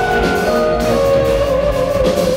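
Live instrumental jazz band playing: electric guitar holding long notes that slide from one pitch to the next, over a drum kit.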